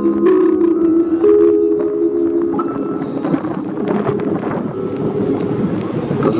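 The last sustained chords of an instrumental backing track ring on and fade out over about three seconds as the song ends, leaving a steady crowd murmur.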